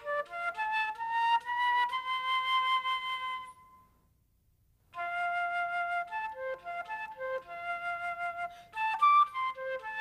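Solo concert flute playing a melody: a quick rising run of notes into a long held note, a pause of about a second, then a faster passage of short notes with a brief high note near the end.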